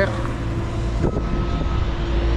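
Steady engine rumble and hum of road-works traffic: a tandem drum roller working fresh asphalt and a van passing close by. A brief click comes about a second in.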